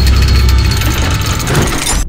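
Logo-reveal sound effect: a loud, deep rumble under a dense hiss, cutting off suddenly at the end.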